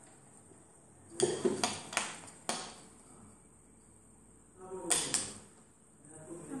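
Wooden puzzle pieces knocking and clicking against a glass tabletop: a quick run of four or five sharp taps a little over a second in, then two more in quick succession near the end.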